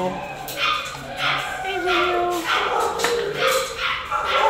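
Dogs in shelter kennels yipping and whining, a string of short high calls coming every half second or so.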